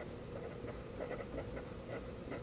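Green felt-tip marker writing on paper: a run of faint, irregular short strokes.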